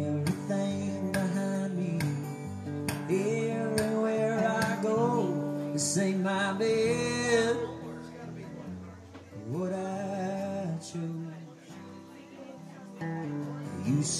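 Live solo acoustic guitar, strummed, with a man singing over it. The voice holds a long note a little past the middle, then the music drops quieter for a few seconds before the singing picks up again near the end.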